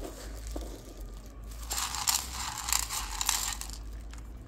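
Shih Tzus chewing dry food from their bowls, a dense crunching that is strongest in the second half.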